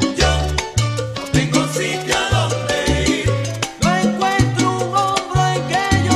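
Salsa romántica band recording playing an instrumental passage over a syncopated bass line, with no vocals.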